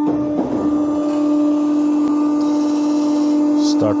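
Hydraulic power unit of an RMT R-Smart plate roll running with a steady hum as a side roll is driven up to pre-bend the sheet. A soft hiss joins about halfway through, with a brief sharper hiss near the end.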